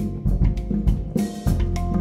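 Handpan, double bass and drum kit playing together live, the drums keeping a busy beat of about four strikes a second under ringing handpan notes and low bass.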